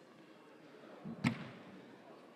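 A single sharp smack about a second in, a slap or impact with a short low thump just before it, over faint room noise.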